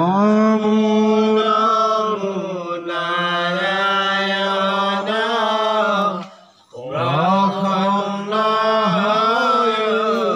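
A man chanting an Assamese naam kirtan into a microphone in long, held, gently wavering notes. He breaks off about six seconds in for a breath and starts again.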